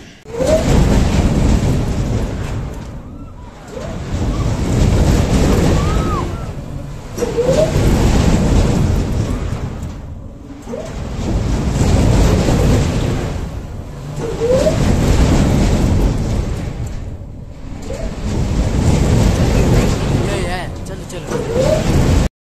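Wind rushing over the microphone on a swinging gondola ride, swelling with each swing and dropping away at the turning points every few seconds. Brief rising squeals come at several of the swings.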